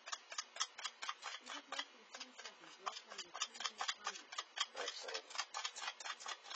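Stir stick clicking and scraping against the sides of a small cup as tinted epoxy resin is mixed briskly, about five quick strokes a second, deliberately whipping air bubbles into the resin.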